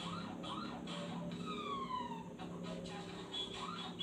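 Faint siren-like warble rising and falling about three times a second, with a single falling whistle-like tone in the middle.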